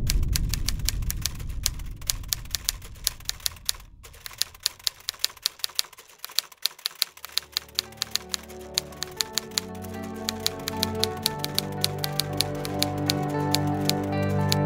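Typewriter keys clacking in quick, uneven strokes, a typing sound effect that runs throughout. A low rumble dies away over the first few seconds, and soft music with held notes comes in about halfway and grows louder.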